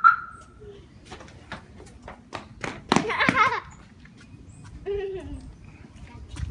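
Children's voices: a short, loud, high-pitched squeal about three seconds in and a brief lower call near five seconds, among a run of sharp light clicks and taps.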